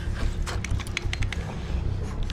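A quick run of sharp mechanical clicks and ratcheting over a low, steady rumble.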